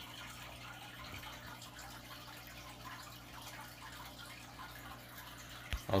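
Aquarium water trickling and dripping faintly and steadily, over a steady low hum. A brief soft knock comes near the end.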